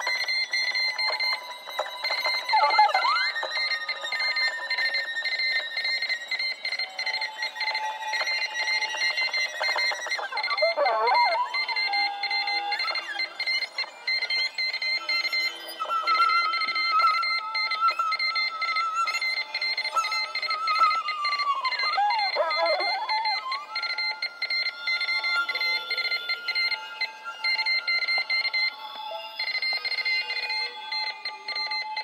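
Violin playing sliding glissandi and long held notes with a wavering vibrato, over two steady high electronic tones. The sound is thin, with no low end, as if relayed through horn loudspeakers or old sound equipment.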